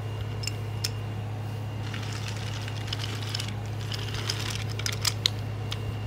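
Light clicks and rattles of toy trains being pushed by hand along a wooden track, over a steady low hum.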